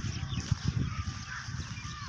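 Faint bird calls over low, irregular thumps and rumble on the microphone of a phone carried by someone walking.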